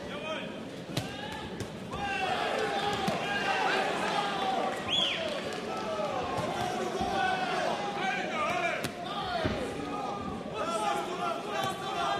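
Arena crowd at a boxing bout: many voices shouting and calling out over one another. A few sharp thuds come through at scattered moments.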